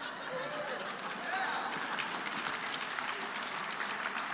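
Audience applauding: a steady spread of many hands clapping, with a few faint voices mixed in.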